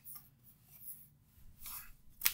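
Faint rubbing and scraping of hands on a Lenovo Legion Slim 7i laptop as its lid is lifted open, with a slightly louder rasp near the end.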